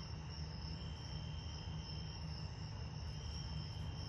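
Crickets and other night insects calling in a steady, unbroken high trill at two pitches, over a low rumble.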